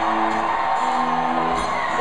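Live rock band playing through a club PA, with held notes ringing out, over the noise of a cheering crowd.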